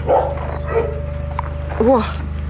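A dog barks briefly just after the start.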